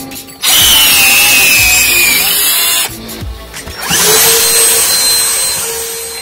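Power drill with a masonry bit boring into a brick wall for about two seconds, its whine sagging slightly under load. After a short pause a handheld vacuum cleaner starts up, rising to a steady run as it sucks up the drilling dust.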